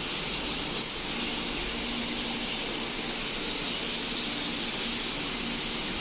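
Steady hiss with a faint low hum that comes and goes, and no distinct knocks or clicks.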